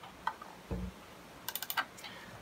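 Hand clicks on a 2006 MacBook Pro laptop: a light click, a dull knock, then a quick run of five or so sharp clicks near the end as a Word template is selected.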